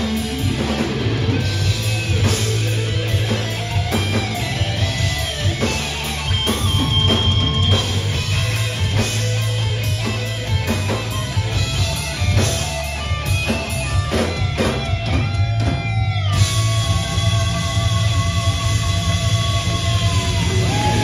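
Thrash metal band playing live on distorted electric guitars, bass and drum kit, with no vocals. A lead guitar line with pitch bends runs over the top, and about sixteen seconds in it settles on one long held note with vibrato.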